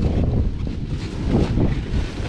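Wind buffeting the microphone: an uneven low rumble, with a faint voice in the background about one and a half seconds in.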